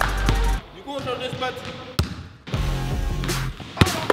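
Background music with a drum beat cuts out about half a second in. In the gap a basketball bounces once, sharply, on a hardwood gym floor, among voices, and the music starts again about halfway through.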